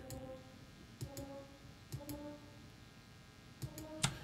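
A few mouse clicks about a second apart as notes are drawn into a piano roll, each followed by a faint short pitched tone.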